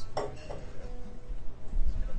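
A brief clink of cutlery on a dish about a fifth of a second in, over faint background music, with a low rumble building near the end.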